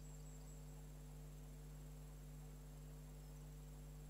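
Near silence: a faint, steady electrical mains hum with no other sound.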